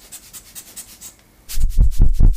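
A rubber rocket blower for cleaning camera lenses squeezed several times in quick succession near the end, each puff of air hitting the microphone as a loud, low buffeting thump.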